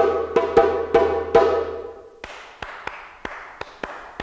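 Djembe struck with the bare hands, playing the break: several sharp strokes that ring on with a held tone. About two seconds in the drum stops and hand claps follow in the same quick pattern, clapping the break back.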